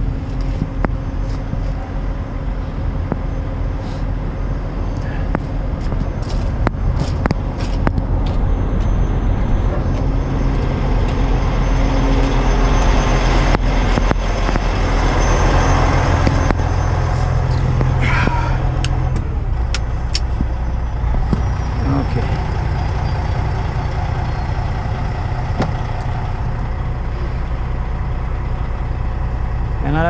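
Kenworth semi truck's diesel engine running steadily, its hydraulic PTO engaged, with the engine note dropping about two-thirds of the way through. A few clanks and knocks come early, and a short squeal just past halfway.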